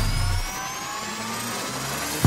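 Synthesized intro sound effect: several tones climbing together in a steady rising sweep over a low rumble that drops back about half a second in, building toward a hit.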